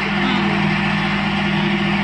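Rice cake extruding machine running: its electric motor belt-drives the screw extruder, giving a steady low hum under a continuous mechanical whir.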